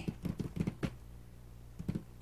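A few light clicks and taps from plastic model-kit parts being handled on a workbench, several in the first second and one more near the end.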